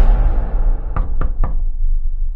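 Three quick knocks on a door, evenly spaced about a quarter-second apart, over a deep bass drone.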